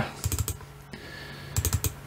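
Computer keys clicking in two quick bursts of several presses, one just after the start and one near the end, as the Street View image is stepped along the road.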